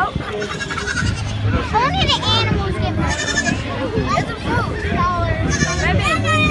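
Goat kids bleating, with several quavering calls about two to three seconds in, over children's voices and crowd chatter.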